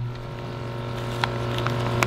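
Steady low electrical hum of running reef aquarium equipment, with several steady tones above it and a few faint clicks.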